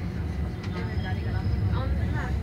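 Tram running, heard inside the passenger car as a steady low rumble, with passengers talking over it.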